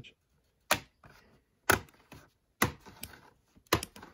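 Plastic retaining clips of an MSI GL73 laptop's bottom cover popping loose one after another as the cover is pried up along its edge. There are sharp clicks about a second apart, with two close together near the end.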